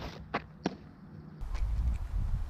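Three sharp pops from a windmill softball pitch, the loudest at the very start and two more within the next second. About a second and a half in, a low wind rumble on the microphone takes over.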